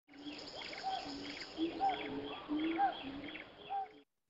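Birds calling in a natural soundscape: repeated short arching whistled notes, about two a second, over a light background hiss.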